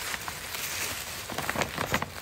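Tissue paper rustling and crinkling as it is pulled out of a gift bag, with a run of sharper crackles in the second half.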